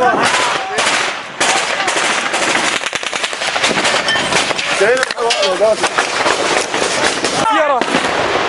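Automatic gunfire: many shots in quick succession, in near-continuous bursts, with men shouting in between.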